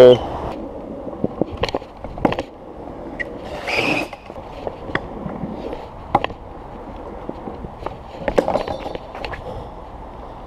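Stunt scooter wheels rolling over wooden deck slats and then stone paving, with a steady rolling noise broken by irregular clicks and knocks, and a louder rushing swell about four seconds in.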